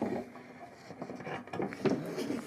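Light handling noises of plywood boards being slid and nudged into alignment on a drill press table, with a few small knocks, the sharpest near the end.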